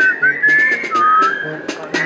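A whistled melody with swooping glides, over a marching band's drum strokes and low brass notes.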